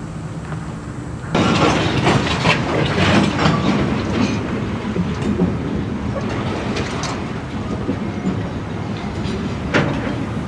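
Norfolk Southern work train of camp cars and maintenance-of-way equipment rolling by, its wheels clattering over rail joints. The clatter comes in louder a little over a second in, over a steady low rumble.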